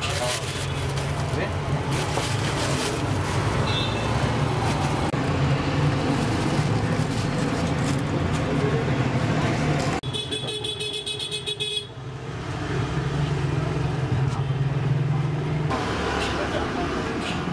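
Roadside street noise: passing vehicle engines with car horns honking, a short honk a few seconds in and a longer stretch of honking past the middle, over background chatter.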